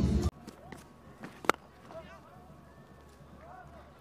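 Cricket bat striking the ball: a single sharp crack about a second and a half in, over quiet ground ambience.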